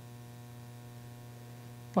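Steady low electrical mains hum in the recording chain, with a row of fainter steady overtones above it and no other sound.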